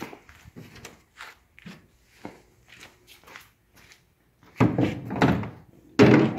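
Footsteps and light knocks as someone walks alongside a plastic pedal boat and handles it: a string of faint, irregular ticks, then a louder noise lasting about a second near the end.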